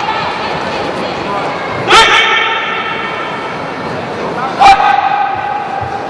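Sanda bout: two sharp smacks of strikes landing on a fighter, about two and a half seconds apart, each followed by a short shout, over the murmur of an arena crowd.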